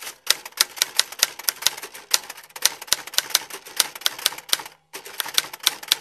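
Typewriter key-strike sound effect, rapid clicks at about seven a second, with a short break about five seconds in. It accompanies text typing onto the screen.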